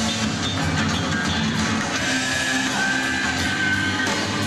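Live rock band playing electric guitars and drums, recorded from the audience. A high note is held through the second half.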